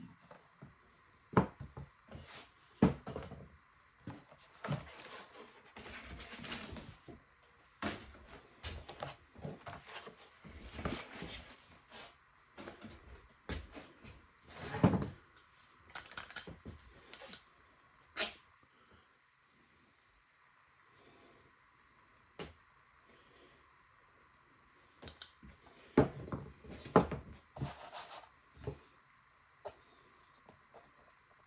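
Aerosol spray-paint cans and other objects being picked up, knocked and set down on a work table, a run of irregular clacks, with short hissing bursts of spray paint in between. It goes quiet for several seconds past the middle before the clatter picks up again.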